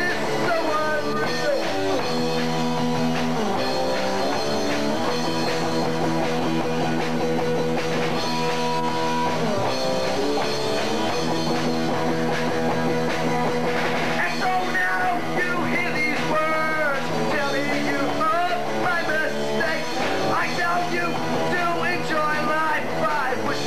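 A live rock band playing a song on electric guitars and a drum kit.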